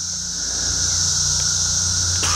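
Craftsman V20 cordless power scrubber's electric motor switched on and running with a steady low hum, growing louder over the first second as it spins up.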